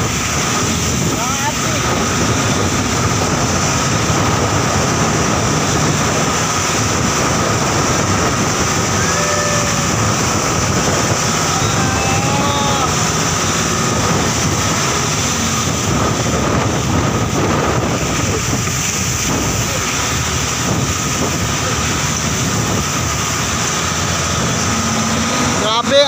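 Motorized outrigger boat's engine running steadily under a continuous wash of wind and sea noise in rough water, with a few faint voices.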